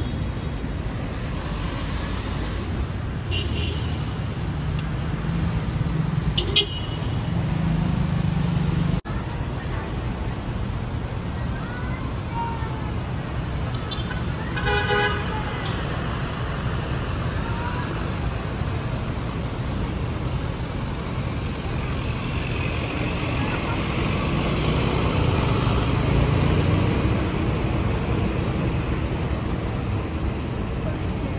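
City street traffic: a steady rumble of passing cars, with a car horn sounding for about a second near the middle.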